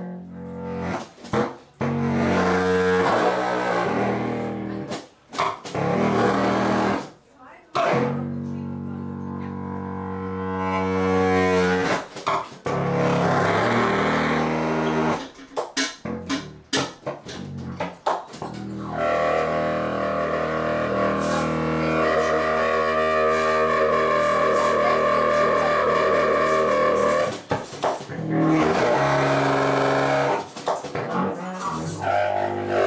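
A tubax, a silver contrabass saxophone, played solo in free improvisation: low, honking held notes rich in overtones, broken by short gaps and sharp attacks. About nineteen seconds in comes one long, dense, many-toned note held for about eight seconds.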